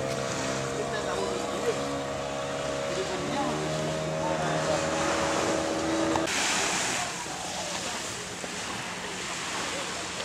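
Small waves washing onto a sand beach, with a steady droning hum over them that cuts off suddenly about six seconds in. After that, a rougher, hissy outdoor wind-and-surf noise.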